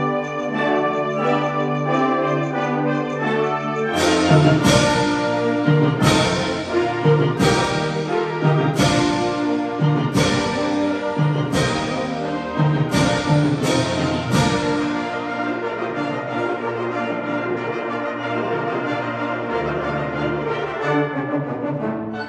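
Concert band playing sustained brass and woodwind chords. From about four seconds in until about fourteen seconds in, loud percussion strikes punctuate the chords about every second and a half, then the band holds chords without them.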